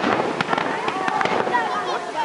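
Aerial fireworks bursting overhead: a sharp bang right at the start, then more sharp cracks about half a second in and a cluster of crackling reports around a second and a half in.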